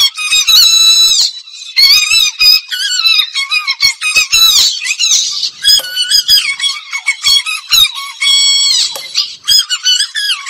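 Tamil film dance song playing with sung vocals. The sound is thin and high-pitched, with almost no bass, as if pitched up or filtered.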